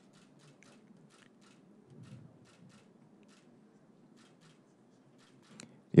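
Faint camera shutter clicks, irregular, about three a second, over a low room hum.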